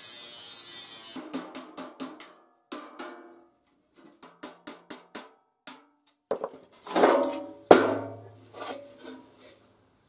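Angle grinder cutting the steel body of an old gas bottle for about the first second, then a run of irregular metal knocks and clanks that ring out from the hollow steel shell, loudest about seven seconds in.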